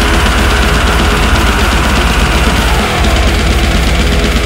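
Studio-recorded extreme death metal: rapid, continuous low drum pulses under a dense wall of distorted guitars, steady and loud throughout.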